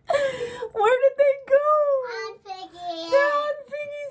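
A woman's high-pitched, wordless voice in a wavering sing-song, holding long notes that bend up and down, with a breathy burst at the start.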